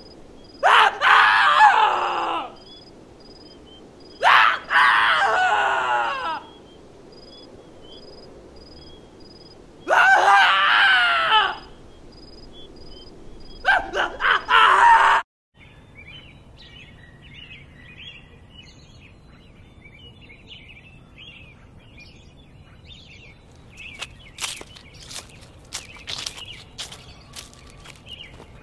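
A person screaming in four long, wavering cries over a steady, evenly repeating chirping of crickets. After a sudden brief dropout, scattered bird chirps follow, and sharp clicks near the end.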